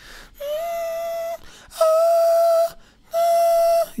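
A male singer holding three high notes on the same steady pitch, one after another with short breaks, in a light, head-voice-like tone; the middle note is the loudest.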